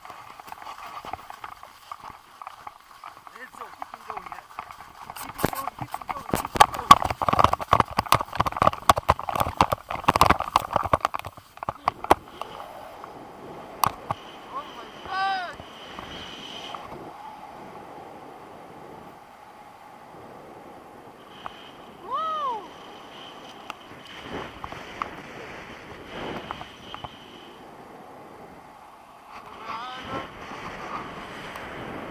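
Paraglider launch run on snow: hurried running footsteps and knocks for several seconds from about five seconds in, the loudest part. Once airborne there is a steady rush of wind on the microphone, with two short cries that glide in pitch.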